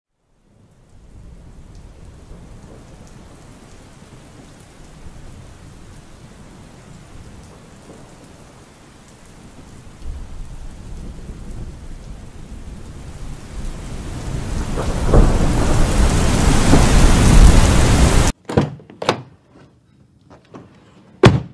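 Rain with rumbling thunder, building gradually louder to a loud rumbling peak, then cutting off suddenly, followed by a couple of short knocks.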